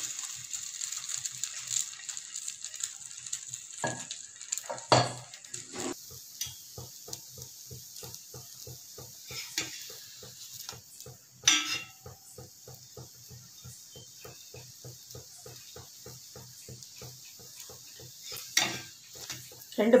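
Egg-dipped bread sizzling in oil on a flat metal griddle, with a steel spatula scraping and knocking against the pan as the slice is moved and flipped. The sharpest knocks come about five seconds in and again around eleven seconds. A faint regular pulsing, about four a second, runs underneath.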